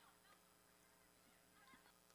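Near silence: a gap in the broadcast sound at an edit between highlight clips.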